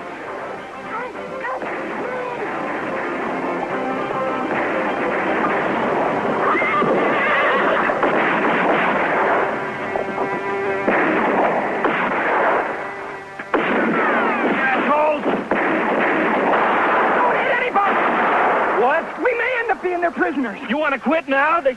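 Horses neighing and whinnying during a mounted chase, with film score music playing over them.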